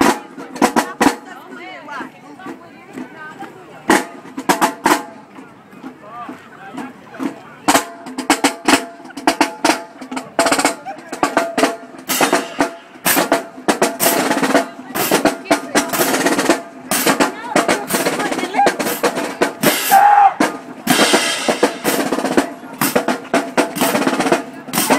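High school marching drumline playing as it marches: a few scattered drum strikes at first, then about eight seconds in the full line comes in with a steady, loud marching cadence that carries on to the end.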